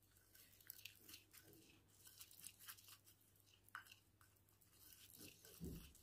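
Near silence with a few faint scattered scrapes and ticks of a plastic spoon stirring a thick paste in a small ceramic bowl.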